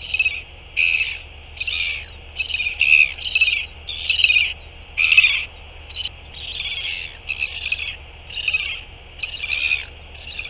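Northern royal albatross chick calling: a steady run of about a dozen short, high chirping calls, roughly one every 0.7 s.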